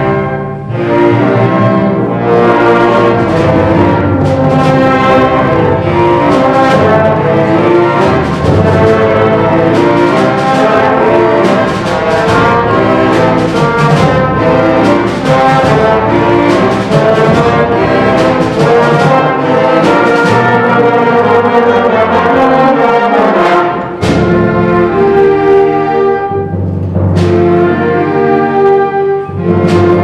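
High school concert band playing: brass and woodwinds in full sustained chords, with timpani. The band cuts off briefly about three-quarters of the way through, then comes back in.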